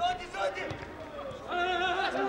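Footballers shouting to one another on the pitch during open play, with a long held call near the end.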